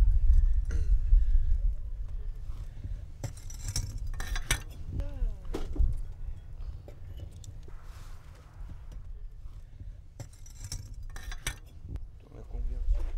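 Ceramic pieces and firebricks clinking and knocking lightly as raku pieces are handled inside a brick kiln, a few scattered clinks over a steady low rumble.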